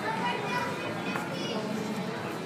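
Indistinct voices of people and children talking in the background on a city street, over steady street noise.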